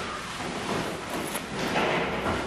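Close-miked wet chewing and mouth sounds of someone eating Babi Panggang Karo, roast pork in a thick blood sauce, coming in soft irregular bursts.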